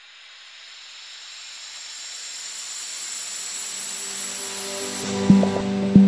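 Logo-intro music: a hissing whoosh swells steadily louder for about five seconds, then a sharp hit lands with a held low tone, and a second hit comes at the very end.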